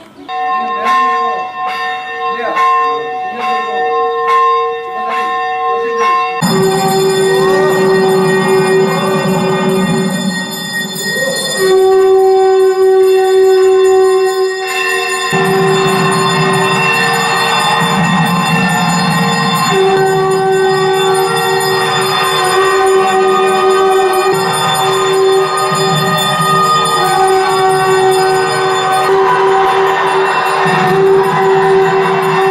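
Hindu temple puja sounds: bells ringing over devotional music with a steady held drone, as is usual during an aarti lamp offering. About six seconds in the sound changes abruptly to a lower held tone over a busier rhythmic accompaniment.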